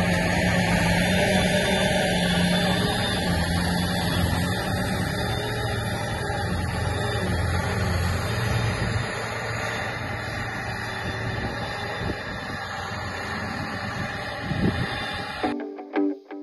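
Claas Jaguar self-propelled forage harvester running steadily while picking up and chopping grass for silage, a dense machine noise with a low engine hum that weakens after about nine seconds. Just before the end it cuts off abruptly to plucked-guitar music.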